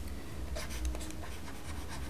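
Stylus scratching on a tablet surface in short writing strokes, starting about half a second in, over a low steady hum.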